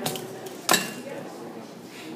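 A hard clack with a short ringing tail about two-thirds of a second in, with a fainter click at the start, as a plastic-cased retractable tape measure is picked up and put down.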